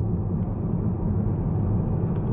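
Steady low road and engine rumble heard inside the cabin of a moving Mercedes car.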